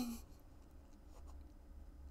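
A held sung note dies away at the very start, then near silence: a faint low room hum with a few very faint clicks.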